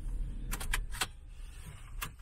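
A few quick, light metallic clicks and jingles inside a parked car, about half a second to a second in, over a low steady hum.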